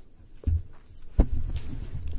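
Long hair being flipped close to the microphone: low thuds and rumble, with two stronger thumps about half a second and just over a second in, and light swishing between them.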